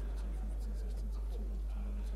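Steady low electrical hum in a hall, with faint murmuring voices and scattered small clicks and rustles.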